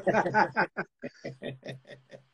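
Men laughing together: a run of quick chuckles, several a second, that grows fainter toward the end.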